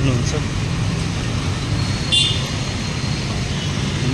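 Street traffic: steady engine and road noise, with a short high-pitched beep about two seconds in.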